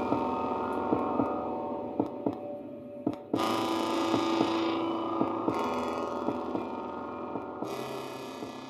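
Instrumental backing music: a sustained, humming chord that is struck again about three seconds in and once more near the end, slowly fading, with light ticks scattered through it.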